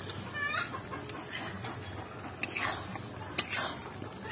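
A metal spatula stirs thick curry in an iron karai, scraping the pan, with one sharp knock against it near the end. A chicken gives one short call about half a second in.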